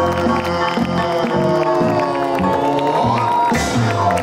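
Live band with violin and piano playing the final held and sliding notes of a song, with the audience cheering and clapping over it.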